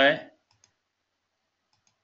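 A man's voice finishes a word, then faint, single mouse clicks a little after half a second in and again just before the end, against near silence.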